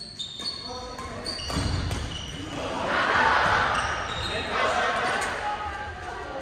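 Badminton rallies on a gymnasium's wooden floor: sharp clicks of rackets striking shuttlecocks and short high squeaks of sneakers on the floor, with voices echoing in the hall, loudest around the middle.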